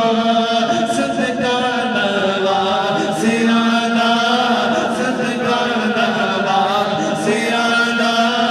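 A naat sung unaccompanied by a male reciter through a microphone, in long, drawn-out melodic lines.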